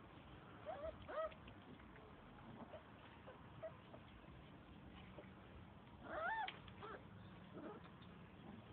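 Blue-nose pit bull puppies whining: a couple of short, high cries about a second in, then a longer, louder one that rises and falls around six seconds in.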